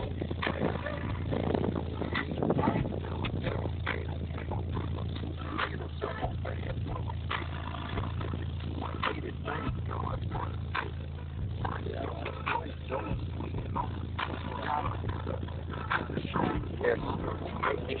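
Orion Cobalt 15-inch car subwoofers in a Ford Ranger playing deep, steady bass, with short rattles and buzzes over it.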